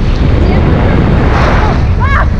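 Wind rushing over a camera microphone during a tandem parachute descent under an open canopy: a loud, steady low rumble that swells briefly in a gust about three-quarters of the way through.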